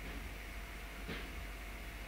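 Steady background hiss and room tone with a faint hum, and a faint brief sound about a second in.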